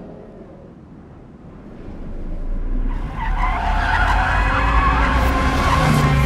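Kia Stinger GT's tyres squealing hard over a low engine rumble, swelling up out of a quiet moment and taking hold about three seconds in.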